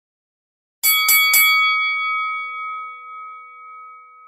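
A bell sound effect: three quick strikes a quarter second apart, about a second in, then a long ringing that fades slowly.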